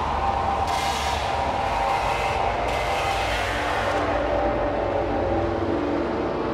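Hard techno DJ mix playing loud over a festival sound system: a dense, rumbling low drone with no clear kick pattern, and a bright hiss layered on top that cuts in and out every second or two.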